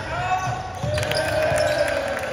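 A basketball bouncing on a hardwood gym floor during a game, with a couple of sharp bounces near the middle and the end, under players' drawn-out calls.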